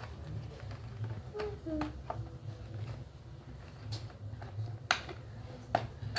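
Cardboard toy box being handled, then two sharp clicks near the end as scissors start cutting into it.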